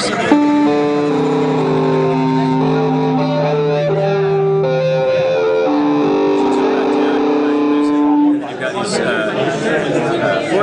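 Sustained electronic synth tones played by tilting a handheld wooden ball controller, stepping from note to note of a scale with several notes held together and a low note held under the first half. The notes stop about eight seconds in, leaving room chatter.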